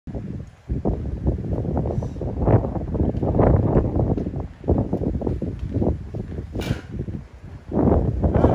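Wind buffeting the microphone in uneven gusts, with a brief click about two thirds of the way through.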